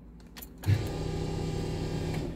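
Two light clicks as the ignition key is turned on, then an electric fuel pump priming. The pump starts with a thump just under a second in and then hums steadily.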